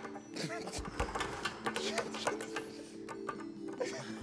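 Steady background music with a flurry of quick taps and clicks through it: hands tapping to claim the right to answer. There are brief murmurs and laughter among them.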